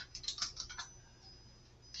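Computer keyboard typing: a short, faint run of quick keystrokes that stops about a second in.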